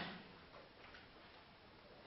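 Near silence: room tone with a faint steady hiss.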